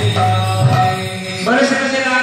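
Devotional chanting of a mantra, sung on long held notes with musical accompaniment; the pitch steps up about one and a half seconds in.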